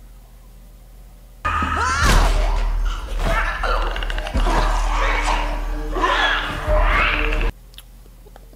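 Drama soundtrack of a fight scene with an infected: tense music with heavy thuds and blows, cutting in suddenly about a second and a half in and cut off suddenly near the end.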